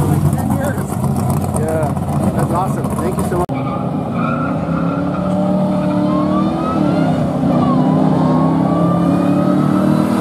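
Drag-race car engines running, with people talking over them for the first few seconds. After a cut, one engine accelerates, its pitch climbing steadily from about the middle, dropping once briefly and then climbing again.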